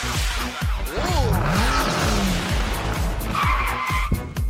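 Cartoon intro sound effects: whooshing noise with swooping pitch glides, ending on a held tone near the end, over the opening of an electronic music jingle.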